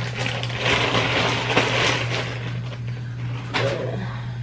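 Rustling and crinkling of wrapping as a wig is pulled out of its packaging and unwrapped, over a steady low hum.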